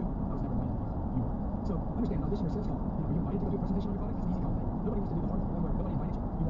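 Steady road and tyre noise inside a car's cabin at highway speed, with a faint voice in the background.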